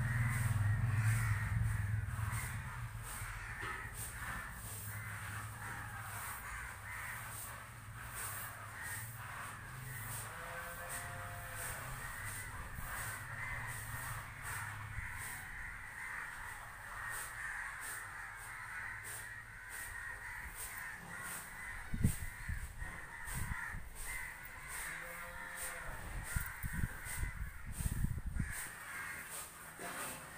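Crows cawing repeatedly in the background. A few sharp low thumps come in the last third.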